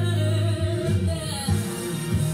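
Recorded gospel song: singing over a heavy bass line whose notes change about every half second.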